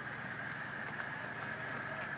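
A 2004 BMW 745Li's V8 running quietly as the car rolls slowly past at walking pace: a faint, steady hum with no sudden sounds.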